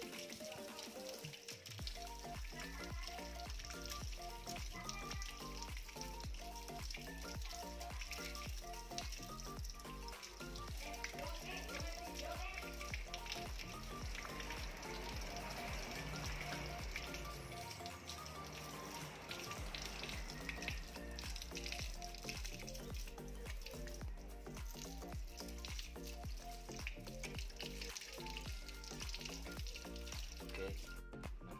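Water running from a hose and splashing onto a fishing rod and the ground as soap suds are rinsed off, under background music with a steady bass.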